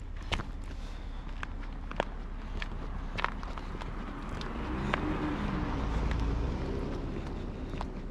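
Footsteps on a wet paved path, with scattered short steps and clicks over a steady low rumble. About halfway through, a passing car's engine and tyre noise swells up and fades away.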